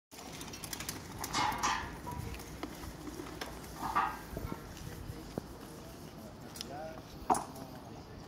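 Scattered light metallic clicks and clinks from a fighter's steel plate armour as he moves about on paving, with two brief louder scuffs about a second and a half and four seconds in. Faint voices can be heard in the background.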